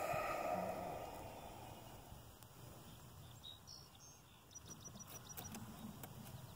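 Quiet outdoor background: a soft hiss that fades over the first couple of seconds, then faint short high chirps in a few runs and some light clicks in the second half.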